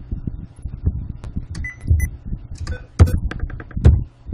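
Irregular clicks and taps of typing at a computer as a word is entered into a database query, with a few heavier thumps. The loudest come about three seconds in and just before the end.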